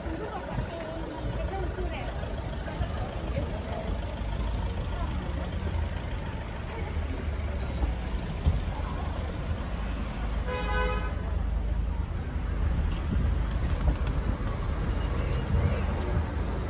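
Busy street ambience: road traffic running past with a steady low rumble, and passersby talking. A car horn sounds once, briefly, about ten and a half seconds in.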